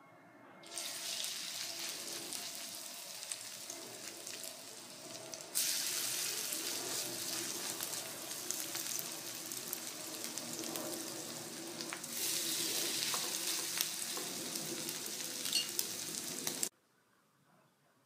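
Shredded-beef and potato patties sizzling as they fry in hot oil in a skillet. The sizzle steps louder twice, then cuts off suddenly near the end.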